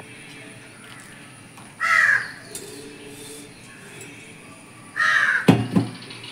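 A crow cawing twice, about three seconds apart.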